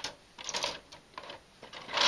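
Hard plastic being handled: grey plastic sprues and a clear plastic blister tray clicking and rattling against each other in a few short bursts.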